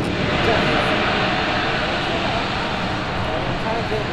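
Steel roller coaster train of a Premier Rides launched coaster running along its track overhead: a steady rushing noise that swells about half a second in and holds, with voices faintly underneath.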